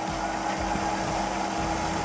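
Wood lathe running steadily with a constant motor hum, while a paper towel is held against the spinning wood to rub in friction polish.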